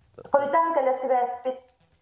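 A woman's voice speaking one short phrase, about a second long.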